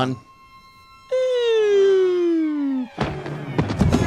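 Film sound effects: a long pitched tone sliding steadily downward for about two seconds, then a loud noisy crash about three seconds in, as two characters collide face-first.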